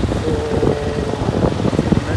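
Street traffic noise under heavy wind buffeting on the microphone, with a steady tone held for about a second.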